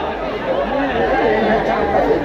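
Several people talking at once close to the microphone, overlapping chatter with no single voice standing out.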